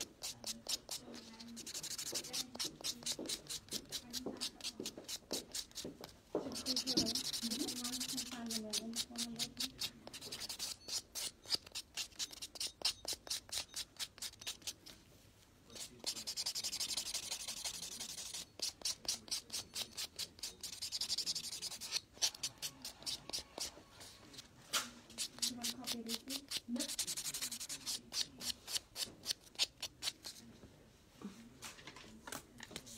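Hand nail file scraping back and forth across a fingernail in quick, even strokes, about three or four a second, in runs broken by short pauses.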